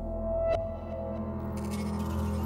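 Contemporary chamber music for harp, double bass, percussion and electronics: sustained low drone-like tones, a single sharp struck note ringing out about half a second in, and a high hissing electronic layer entering near the end.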